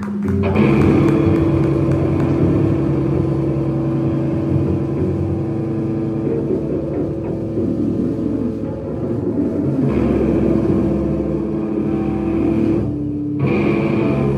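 A live rock band (electric guitar, bass guitar and drum kit) playing loud, with long held notes; the band comes in hard about half a second in.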